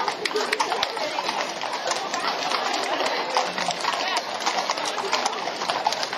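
Hooves of a group of ridden horses clip-clopping on a wet paved street, a dense, irregular run of sharp knocks, with onlookers talking underneath.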